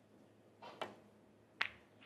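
A snooker shot: the cue tip strikes the cue ball, then about three-quarters of a second later there is a sharper, louder click as the cue ball hits an object ball.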